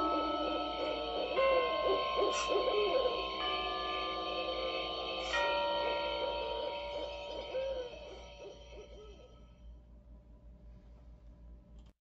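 Closing soundscape of an owl hooting over held, eerie synthesizer tones, with new notes entering a few times. It fades out over the last few seconds.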